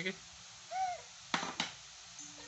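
A young child's short voiced note that rises and falls in pitch, followed about a second and a half in by two brief breathy, noisy sounds.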